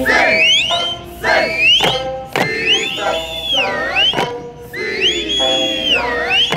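Eisa music with held singing tones and drum strikes roughly once a second. Shrill finger whistles repeatedly swoop up to a high held note and drop away over it.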